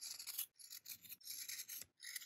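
Scissors cutting through plush fabric: a series of faint, short, crisp snips and scrapes.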